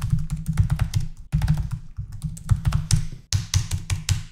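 Typing on a computer keyboard: runs of quick keystrokes with short pauses between them, as a password is entered twice and Enter is pressed through a series of prompts.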